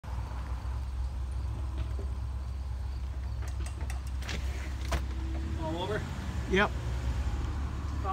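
Low, steady rumble of 2020 Ford Explorer police SUVs idling and pulling around in the street, with a few sharp clicks around the middle. No siren wail is heard.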